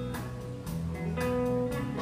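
Live country band playing an instrumental bar between vocal lines: guitars strumming over sustained chords, with no singing.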